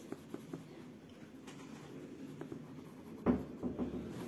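Green coloured pencil shading a word on a paper workbook page, a faint scratching of short back-and-forth strokes that gets louder about three seconds in.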